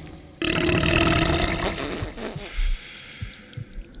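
A deep, guttural, belch-like groan lasting about two seconds, starting suddenly half a second in: a creature sound effect of the living cave answering. A low thump follows.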